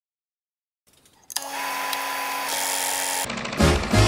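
Film projector running: a steady mechanical whir with a constant motor whine that starts suddenly about a second and a half in and cuts off about two seconds later. Music with a pulsing bass beat starts just after it, near the end.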